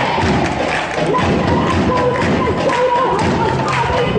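A crowd of women chanting together in high voices, with repeated low thumps close to the microphone.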